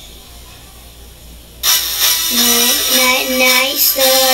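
Low hiss, then a song starts suddenly about a second and a half in: music with a voice singing a melody in held, stepped notes.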